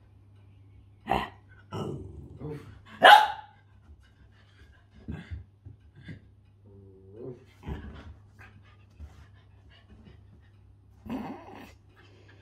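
Dogs playing together, giving a few short barks and growls spaced out over several seconds, the loudest about three seconds in. A low steady hum runs underneath.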